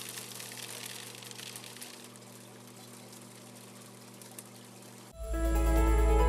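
Water pouring steadily from a fish egg sorter's outlet into a plastic colander of eggs, over a faint low hum. About five seconds in, this cuts off and loud electronic music starts.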